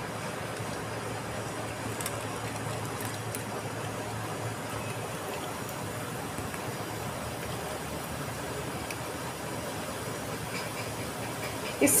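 Sugar syrup heating to a boil in an aluminium kadhai over a gas burner: a steady, even hiss.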